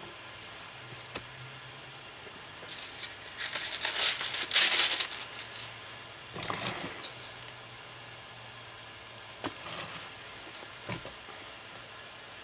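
Rubbing and rustling from hands working on a mat board, loudest about three to five seconds in, then a shorter stretch near the middle and a few light clicks.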